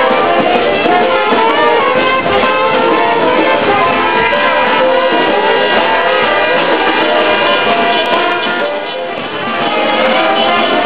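A live band playing, with trumpet and guitar, dipping briefly in loudness near the end.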